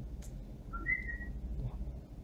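A brief high whistle: two short notes, the second higher and held a little longer, coming just after a light click, over a low steady hum.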